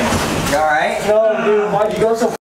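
Loud, excited voices of people yelling and talking over one another inside the cargo box of a moving truck.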